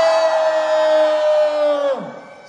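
One long, high yell held on a single note through the PA microphone, sinking slightly in pitch and breaking off near the end, with a crowd cheering beneath it.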